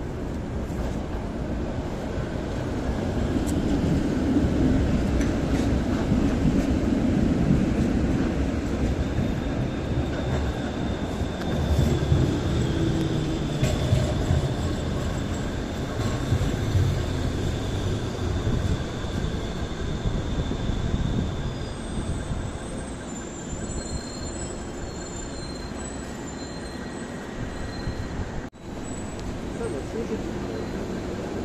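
City trams passing on street rails: a low rumble of wheels on track that swells as each tram goes by. A thin high wheel squeal is held for about ten seconds in the middle, and higher whines come and go near the end.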